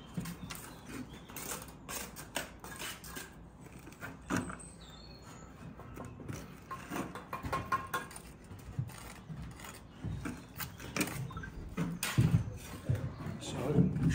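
Bricklaying at close range: a steel trowel scraping and tapping, and bricks being pressed and knocked down into a bed of mortar. The knocks come irregularly throughout and are loudest near the end, as a tight-fitting brick is worked into place.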